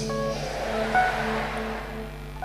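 Soft background music: steady held low tones with a few short higher notes, under a broad swell of noise that rises and fades around the middle.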